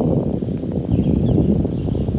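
Wind buffeting an outdoor microphone: a steady, rumbling low noise with constant rapid flutter in level.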